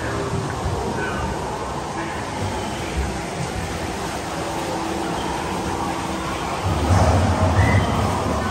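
Echoing dark-ride ambience: a steady background wash with faint voices and tones, and a heavier low rumble about seven seconds in.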